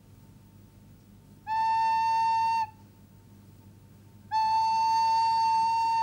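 Homemade recorder blown in two steady held notes at the same pitch: a short one about a second and a half in, then a longer one from about four seconds in.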